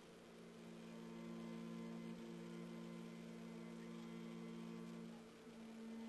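A man's chanting voice holding one long, steady low note that slowly swells, shifting pitch a little about five seconds in.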